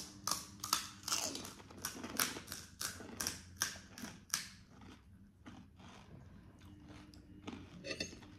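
Crisp pani puri shells being bitten and chewed close to the microphone: quick crunches, about three or four a second, for the first half, then only faint chewing.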